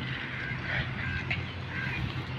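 A bird calling in short, repeated notes, over a low steady hum.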